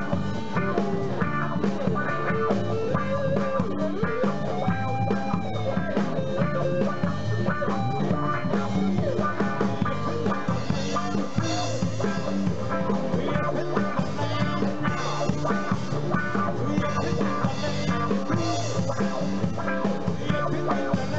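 Live band playing an instrumental passage: guitar over a drum kit, with held and sliding lead notes.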